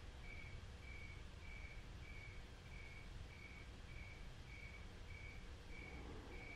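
A cricket chirping faintly in an even rhythm, a little under two short high chirps a second, over a faint steady hum.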